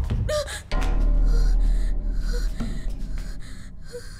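A dark horror-film music cue that opens with a sudden deep low boom just under a second in, which slowly fades. Over it, a woman gasps and breathes in fright.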